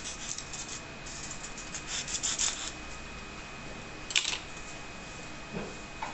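Scratchy rubbing and scraping of a white craft cone being trimmed and smoothed at its cut edges by hand, in quick close strokes for the first couple of seconds, then sparser. A single sharp click about four seconds in.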